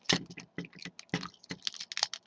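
Plastic parts of a Transformers Robots in Disguise Railspike figure clicking and knocking in the hands as its legs are split apart for transformation: a quick, irregular run of small clicks.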